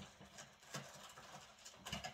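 Faint, irregular knocks and clicks of someone rummaging through things in the room, several in two seconds, the loudest near the end.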